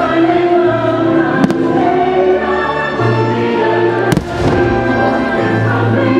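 Show music with a choir singing over sustained orchestral chords, punctuated by two firework shell bursts bursting overhead, about a second and a half in and again about four seconds in; the second bang is the louder.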